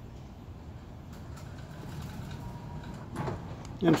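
LiftMaster slide gate operator (CSL24U controller) running, with a steady low hum and a faint thin whine as the wooden gate rolls open. The owner finds that this opener balks in cold weather and has to be coaxed open a little at a time.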